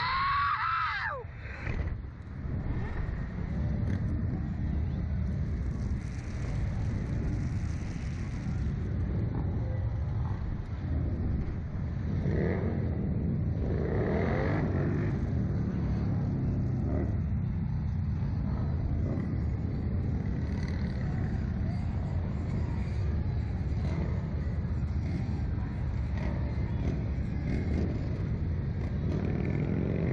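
Wind buffeting the microphone of a camera mounted on a Slingshot ride capsule as it swings and tumbles through the air, a steady low rushing roar. A short yell that falls in pitch at the very start.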